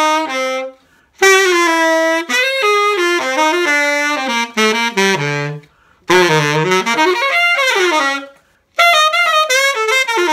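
Original Selmer Balanced Action tenor saxophone played through a hard rubber mouthpiece in flowing phrases, broken by short pauses for breath about a second in, just before six seconds and at about eight and a half seconds. It is playing as found, on its old original pads with no resonators, before an overhaul.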